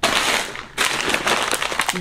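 Plastic bag of frozen zucchini lentil pasta crinkling loudly as it is grabbed and handled: a dense crackling rustle that starts suddenly, with a short break just under a second in.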